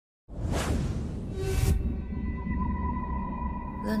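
Cinematic logo-intro music: a deep rumbling drone with two whooshes in the first two seconds, then a held high tone. Near the end a voice begins announcing "Lunar Eclipse".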